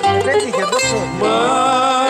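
A man singing a Greek song into a microphone over a plucked-string accompaniment. About a second in he starts the word 'Ma' and holds it as a long note with vibrato.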